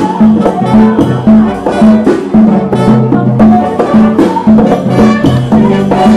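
Live jazz band playing: trumpet leading over a low bass line that repeats about twice a second, with drums and hand percussion keeping a steady rhythm.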